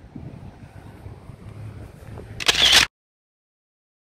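Low wind rumble and handling noise on a phone's microphone, then a short, loud handling knock and rustle about two and a half seconds in. After it the sound cuts off to silence.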